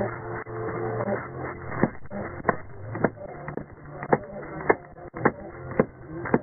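Sharp, evenly spaced clicks, a little under two a second, begin about two seconds in over a low steady hum.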